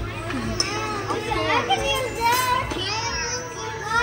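Children's voices talking and exclaiming over one another, with music underneath.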